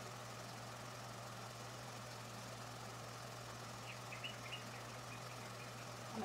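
Steady low hum under a faint even background noise, with a few short high chirps about four seconds in.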